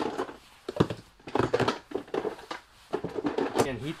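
A man talking, with a sharp click about a second in.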